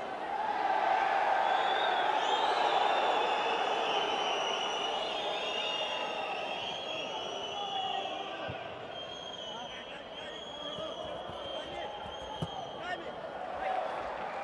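Football players' shouts and calls on the pitch, ringing around a largely empty stadium, with a few sharp thuds of the ball being kicked in the second half.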